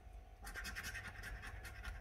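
A coin scratching the scratch-off coating of a paper scratch card in quick, rapid strokes, starting about half a second in.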